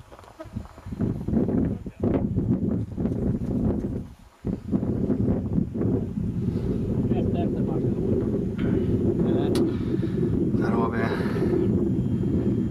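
Wind buffeting a camcorder microphone outdoors, a steady low rumble that drops away briefly twice. A voice is heard briefly near the end.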